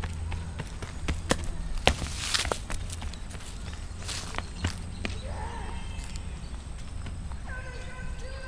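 Sneakers running on asphalt: a quick string of sharp footfalls in the first couple of seconds, over a steady low rumble. A short, high voice-like call comes near the end.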